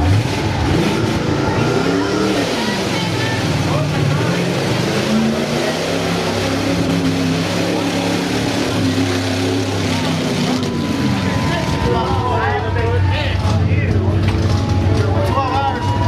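A car engine revving, its pitch rising and falling several times and held for long stretches in between.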